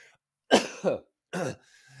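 A man coughing and clearing his throat in three short bursts.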